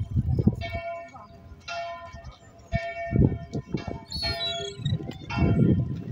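A church bell ringing, its strokes about a second apart, which die away about three seconds in; the midday ringing. Low rumbles of wind or handling on the microphone run underneath.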